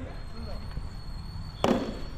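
Cricket bat striking the ball: a single sharp crack about a second and a half in, with a short ring after it.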